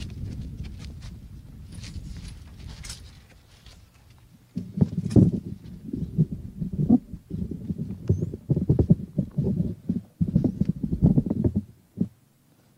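Low rumbling, then loud, irregular low thumps on an outdoor microphone from about halfway in, cutting off suddenly at the end.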